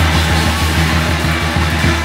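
Live band playing loud Istanbul psychedelic rock, with a fast, pulsing bass line under drums and electric strings.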